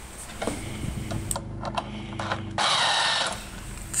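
A small machine running with a steady low hum and rapid clicking, then a louder rushing burst of noise for under a second, about two and a half seconds in.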